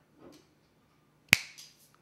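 A single sharp click, a little over a second in.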